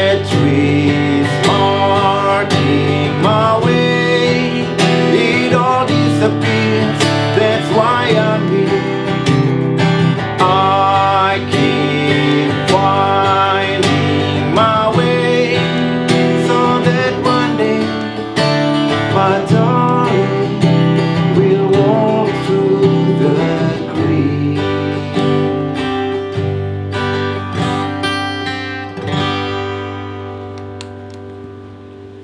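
A man singing over a strummed steel-string acoustic guitar. About three-quarters of the way through the voice stops and the guitar plays on alone, getting quieter toward the end as the song closes.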